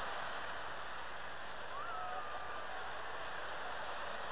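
Theatre audience laughing and applauding after a punchline, a steady even wash of crowd noise, with a faint whistle-like tone about halfway through.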